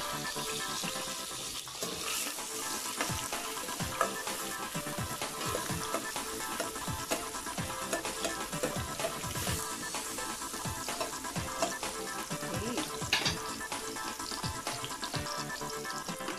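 Chopped garlic and red onion sizzling and crackling in hot oil in a stainless steel pot, stirred now and then with a metal spoon. The sauté runs steadily throughout.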